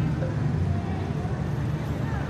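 Steady low rumble of city street traffic, with faint voices in the background.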